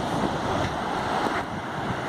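Surf washing steadily onto a sandy beach, with wind buffeting the microphone.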